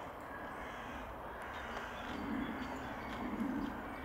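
Crows cawing repeatedly, a little louder from about halfway through.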